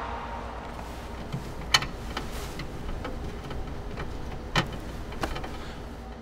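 Quiet room tone with a low steady hum, broken by three faint, short clicks.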